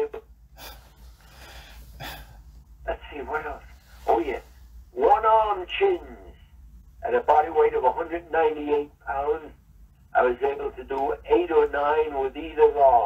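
Speech: a man's voice speaking in short phrases with pauses between them.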